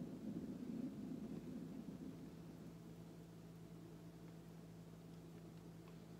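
Faint low rumble of a canvas spinning on a turntable, dying away over the first two seconds as it coasts to a stop, then only a faint steady hum.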